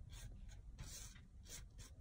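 Soft-bristle paint brush sweeping lightly over glued rhinestones and loose glitter on a wooden letter, a few faint scratchy strokes.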